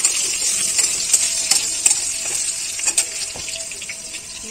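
Food frying in oil in a metal kadai on a gas stove: a steady sizzle, broken by several sharp clicks of a utensil against the metal pans.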